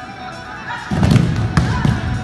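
Several heavy thuds of bodies landing on a gym mat as students throw their partners in a self-defence drill, coming in a cluster from about halfway through, over background music.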